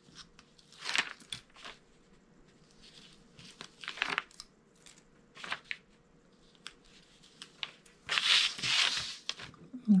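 Backing liner being peeled off strips of double-sided tape stuck to paper, with small crackles and paper rustling. There are a few short peels, and a longer, louder one about eight seconds in.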